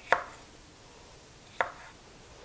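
Chef's knife chopping green bell pepper on a wooden cutting board: two sharp knocks of the blade striking the board, about a second and a half apart.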